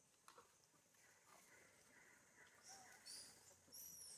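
Faint, high-pitched animal chirps: a few short calls in the second half, over a quiet background.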